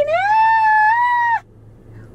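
A woman's voice holding one long, loud, high-pitched note: the word "here" drawn out in a sing-song squeal that rises, holds steady for over a second, and cuts off sharply.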